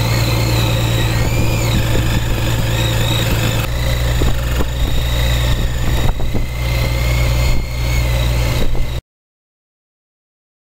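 Boat engine idling with the high whine of a cordless power tool cutting into a bluefin tuna's head, the whine wavering in pitch as the tool is worked. The sound cuts off suddenly near the end.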